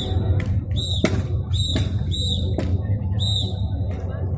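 Sharp wooden clacks of single sticks striking during a gatka sparring bout, a few in quick succession, while a bird nearby chirps over and over with short rising-and-falling calls.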